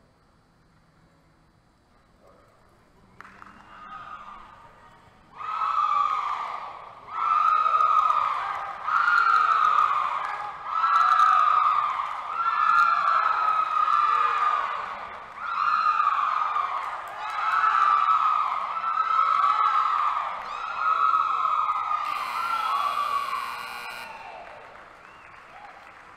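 A loud wailing tone that rises and falls over and over, about once every two seconds, starting a few seconds in and fading out near the end.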